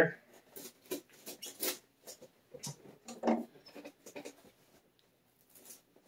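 Knife blade cutting packing tape on a cardboard shipping box: a string of short, irregular scratches and ticks, the loudest about halfway through.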